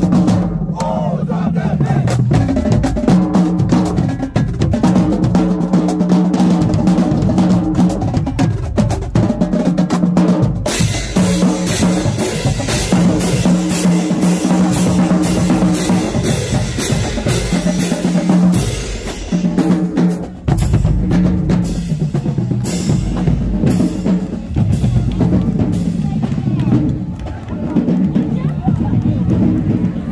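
Marching band drumline playing a loud cadence on bass drums, snare drums and cymbals. The snare and cymbal hits grow denser and brighter about a third of the way in.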